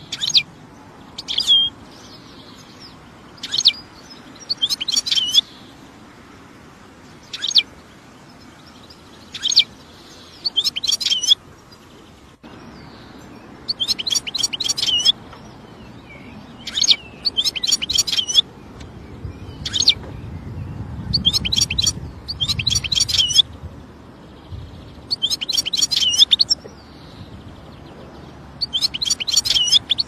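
Goldfinch calling: single sharp chirps alternating with quick runs of twittering notes, recurring every couple of seconds.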